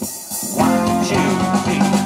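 Live band with guitar, bass and drum kit starting to play about half a second in, on a count-in.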